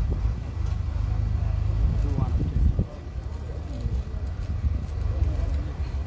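A steady low rumble with faint, indistinct voices of people nearby talking.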